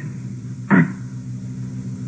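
Steady low electrical hum of an old tape recording, a stack of even tones, with one short falling vocal sound a little under a second in.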